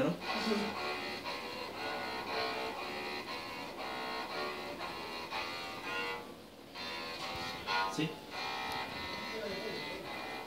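Electric cello bowed by a beginner: a string of sustained notes, each held about half a second, with a short break about six seconds in before a few more notes.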